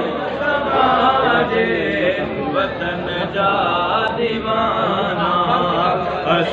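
A man reciting a Sindhi naat unaccompanied through a microphone, singing long, gliding vocal lines with no instruments.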